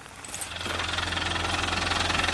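A four-wheel-drive's engine running steadily with an even pulsing beat. It comes in about half a second in and gets gradually louder.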